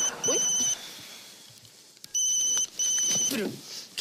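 Mobile phone ringing with an electronic ringtone: pairs of short rings, one pair at the start and another about two and a half seconds later.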